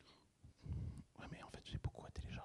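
Quiet, off-microphone speech, low and murmured, starting about half a second in.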